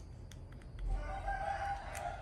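A rooster crowing once: one long call beginning about a second in and tailing off at the end.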